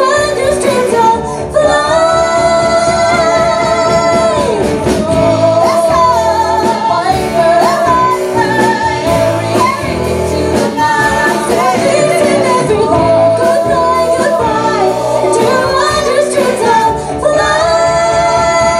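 Several women singing together in harmony over a live punk-rock band of electric guitar, bass, drums and piano, holding long notes. There are short breaks about a second in and near the end.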